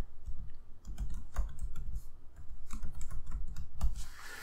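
Typing on a computer keyboard: an irregular run of quick key clicks as a word is typed.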